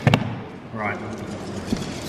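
Dice and a plastic dice tray knocking on a gaming table: a sharp clatter and thud at the start, then a single click near the end.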